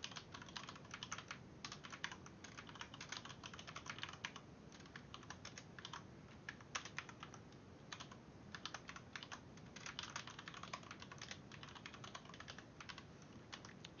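Computer keyboard being typed on, faint keystrokes in quick runs broken by short pauses.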